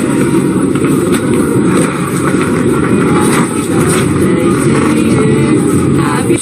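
Steady low rumble of street traffic, with a vehicle engine running under the outdoor market background.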